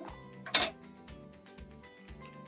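Background music with a steady beat. About half a second in, a short, sharp clink as a metal teaspoon is set down on a glass tabletop.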